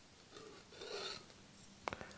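Faint rubbing and scraping as a wooden confrontation stick and its plastic case are handled, with one sharp click near the end.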